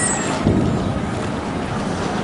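Steady wind buffeting the microphone, with a stronger low gust about half a second in.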